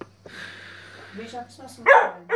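A rough collie barks once, loud and sudden, near the end, after a softer breathy noise in the first second.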